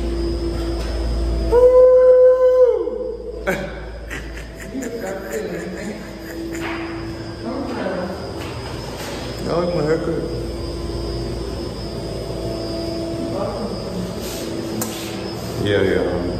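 People's voices over background music, with one loud, long held vocal note about two seconds in.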